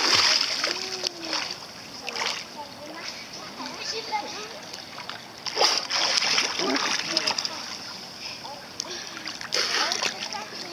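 Water splashing as a child swims in a pool: a loud splash as he enters the water, then kicking feet and arm strokes splashing on and off, louder again around six seconds in.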